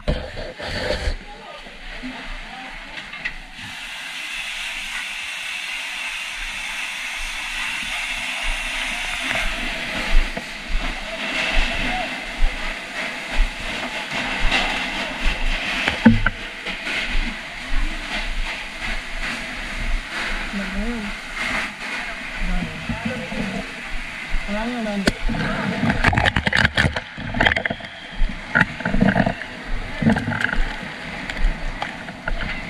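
Steady hissing of water spray and steam from a fire hose being put on a fire, beginning a few seconds in and growing, with scattered knocks. Voices call out over it in the second half.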